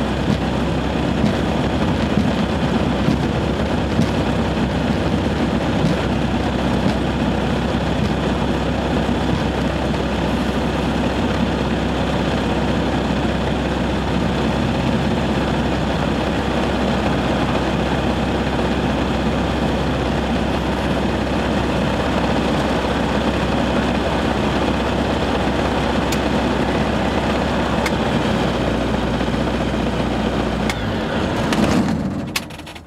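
Light aircraft's piston engine and propeller running steadily at low taxi power, heard from inside the cockpit. The engine note drops near the end as it is shut down.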